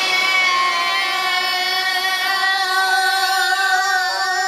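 Children singing together, holding one long, steady note.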